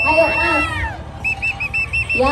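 A pea whistle blown hard: one long steady blast, then about a second in a rapid trill of short repeated blasts. Voices of the crowd sound underneath.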